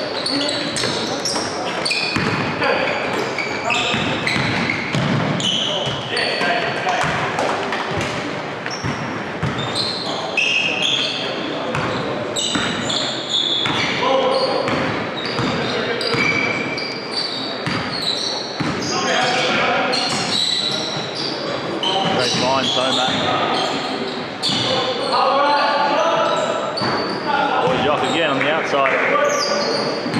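Basketball dribbled on a hardwood gym floor during play, with sneakers squeaking and indistinct shouts from players, all echoing in a large hall.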